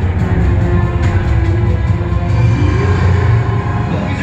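Dark, tense film score with a heavy, steady bass rumble and long held low notes, played back from a Blu-ray through a home audio system.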